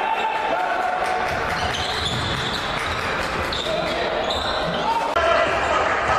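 Basketball game sound in an echoing arena: a ball bouncing on the court amid voices from players and spectators. The ambience changes abruptly about five seconds in and gets a little louder.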